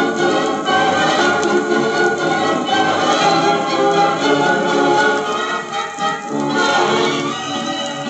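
A 1950s Soviet long-playing record played at 33 rpm on a portable suitcase record player: continuous dance-orchestra music with voices singing.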